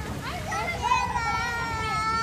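A young girl's voice: short wavering sounds, then, from about halfway, a long held high note, sung rather than spoken.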